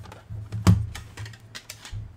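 Hard plastic PSA graded-card slabs clacking against one another as they are handled and stacked: a run of sharp clicks, the loudest about two-thirds of a second in.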